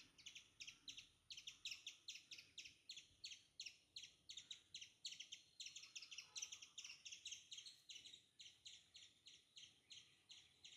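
Faint bird chirping: a steady run of short, high chirps, several a second, against near silence.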